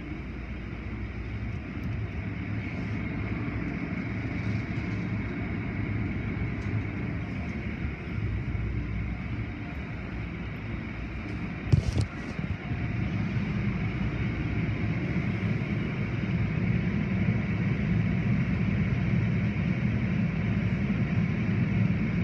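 Automatic tunnel car wash running: a steady rumble and rush of water and swinging cloth wash strips over a car. There is one sharp knock about twelve seconds in, and the low rumble grows louder in the second half.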